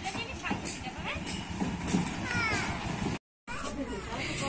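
Outdoor background of distant voices, with a couple of short falling cries about two seconds in; the sound drops out completely for a moment a little past three seconds, at a cut.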